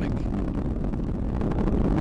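Steady low rumble of an Atlas V rocket in powered ascent, driven by its RD-180 main engine and a single solid rocket booster.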